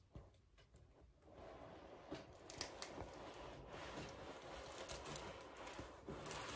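Faint handling noise: near silence for about a second, then soft rustling with scattered small ticks as the large diamond painting canvas is moved close to the camera.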